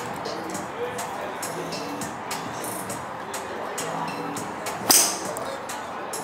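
A golf driver striking a ball off a hitting mat: one sharp crack about five seconds in, over steady background music.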